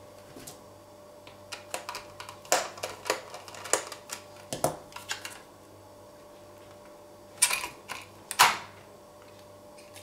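Light clicks and taps from hands working the spring-loaded screws and plastic pull tab of a laptop's metal hard-drive caddy. Near the end come two louder scraping clatters, a second apart, as the tray is pulled free of its bay.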